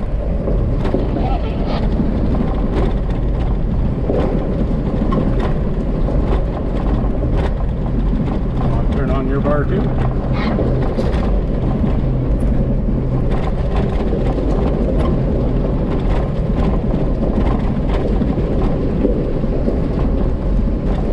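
Jeep driving slowly over a gravel trail bed, heard from inside the cab: a steady low engine and tyre drone with frequent small clicks and rattles from the gravel and the body.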